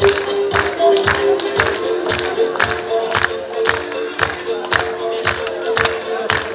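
Music with a steady beat of about two beats a second under a held melody line.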